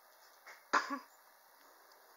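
A person coughs once, a short sharp cough in two quick pulses a little under a second in, with a faint throat sound just before it.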